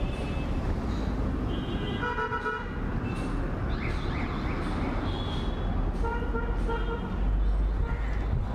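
Busy street traffic, with several short vehicle horn honks over continuous engine and road noise and a low rumble swelling near the end.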